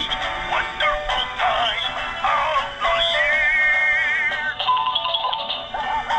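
Animatronic plush dog toy playing a song through its small built-in speaker: a singing voice with music, thin and without bass, with a held wavering note about halfway through.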